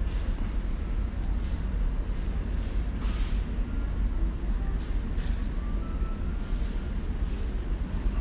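A steady low rumble with short hissy rustles coming about once a second.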